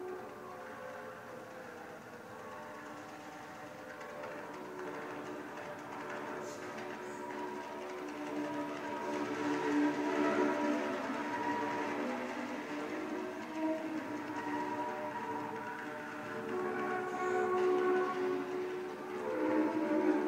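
Bowed double bass and alto saxophone in free improvisation, holding long overlapping tones that sound together like a chord of horns. The sound grows slowly from quiet to full over the first ten seconds and swells again near the end.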